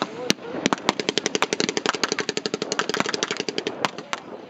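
Blank gunfire: a few single rifle shots, then about a second in a machine-gun burst of rapid, evenly spaced shots lasting about two and a half seconds, followed by two more single shots near the end.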